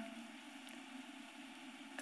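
Faint steady hiss of a studio room's background, with one small tick about a third of the way in.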